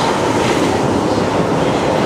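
London Underground tube train running into a station platform past the listener: a loud, steady noise of wheels on rails and train motion, echoing off the platform tunnel.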